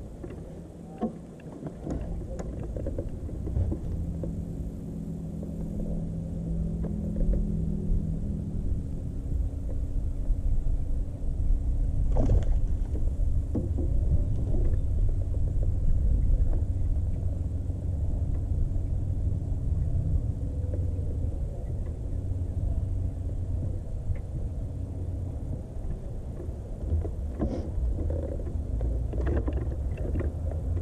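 Steady low rumble of wind on the camera microphone, with a low steady hum from the jon boat's bow-mounted electric trolling motor. A few light knocks, one about twelve seconds in and a couple near the end.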